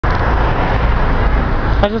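Steady city street traffic noise with a heavy low rumble. A man's voice starts near the end.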